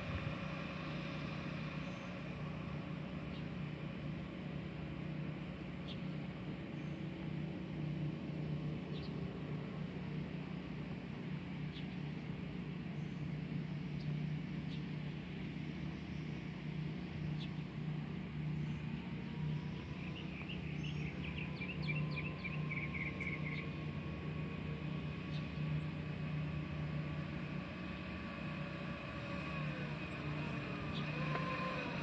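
Faint whine of a Razor MX350 electric dirt bike's motor, growing in the last third as the bike rides back toward the microphone, over a steady low hum. A short run of quick bird chirps about two-thirds through.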